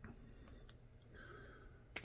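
Near silence with a few faint clicks of trading cards being slid and flipped through by hand, the sharpest near the end.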